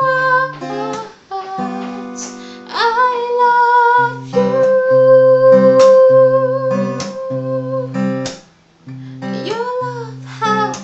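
A woman singing to her own strummed acoustic guitar, with one long held note in the middle and a short pause near the end.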